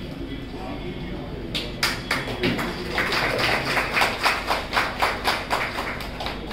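Small audience clapping, starting about a second and a half in, with about four claps a second over low murmuring voices.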